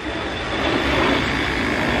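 Handheld electric air pump running steadily, blowing air into an inflatable swan pool float.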